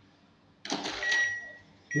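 Cash-recycler ATM's motorised cash slot shutter running open to present the notes, starting about halfway through. A steady high beep follows, with another starting near the end, prompting the user to collect the cash.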